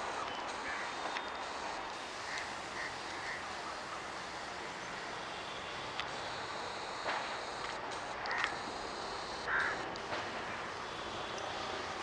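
Birds cawing in short calls several times over a steady outdoor background hiss. The calls are bunched around two to three seconds in and again near the end.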